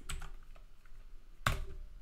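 Computer keyboard being typed on lightly, a few faint key taps, with one sharper click about one and a half seconds in.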